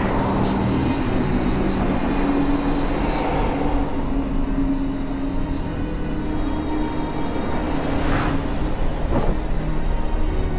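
Dark, ominous film score: a steady low rumbling drone with a held tone over it. A sweeping whoosh comes near the end.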